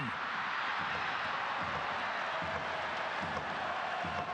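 Stadium crowd noise: a steady din from the crowd just after a goal is scored.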